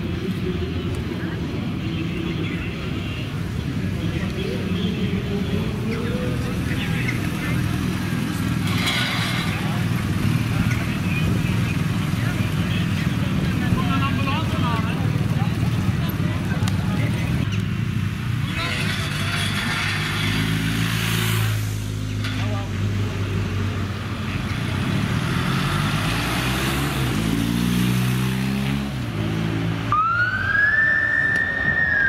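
Police motorcycle engines running as they ride past, then pulling away with the engine note climbing and dropping back through several gear changes in the second half.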